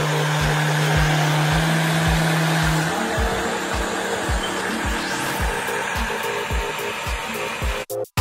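BlendJet 2 cordless portable blender running, its motor whirring steadily as it blends a smoothie. The hum's pitch steps up about three seconds in.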